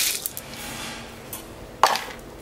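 Ice tipped from a scoop onto the top of a full cocktail glass, clattering briefly at the start. A single sharp clink comes near the end.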